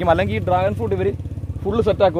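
A man talking, over the steady low rumble of an idling engine, most likely a motorcycle's. The rumble fades out just after the talking pauses.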